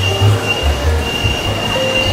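Busy street noise with a steady high-pitched squeal running through it, broken briefly a little before the middle, over an uneven low rumble.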